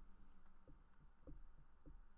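Near silence, with faint soft low thumps about every half second.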